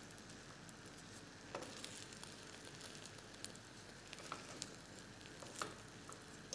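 Faint sizzling of an egg frying in oil in a small pan on a gas hob, with a few light clicks of a spatula against the pan.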